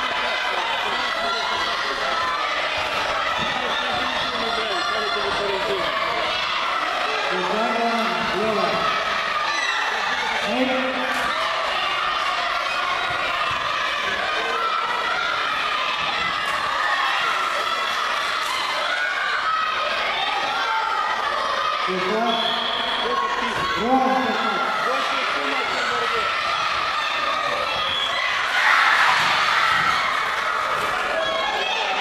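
Crowd of spectators in a large sports hall, many voices talking and shouting at once. A louder burst of shouting comes near the end.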